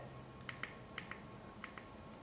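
Faint short clicks, in three pairs, as a lighted tire pressure gauge is worked on a riding mower tire's valve stem.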